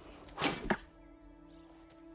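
A quick whoosh lasting about a third of a second, ending in a sharp crack, followed by a low, steady music drone.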